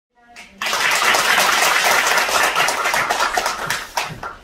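Audience applauding: dense clapping that starts abruptly about half a second in and dies away just before the end.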